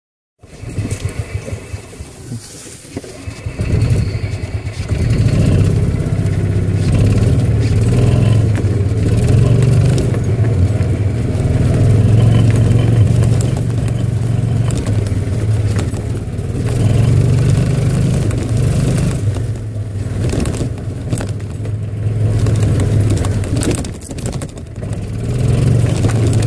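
Golf cart driving along a rough dirt trail, its motor giving a low steady hum that swells and eases as it speeds up and slows. The first few seconds are quieter, and from about four seconds in it runs loud, with scattered knocks and rattles from the bumpy ground.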